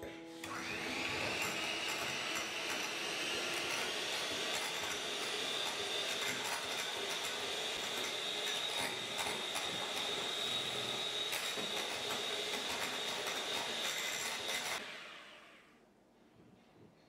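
Electric hand mixer whipping egg whites in a glass measuring jug. The motor whine rises in pitch over the first few seconds, then holds steady, with light clicks of the beaters against the glass. It switches off and dies away near the end.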